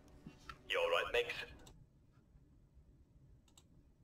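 A short burst of voice about a second in, then near-silent room tone with a few faint clicks while the film's playback is paused.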